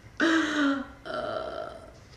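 A woman laughing in two drawn-out voiced bursts, the first starting a fifth of a second in and the second about a second in.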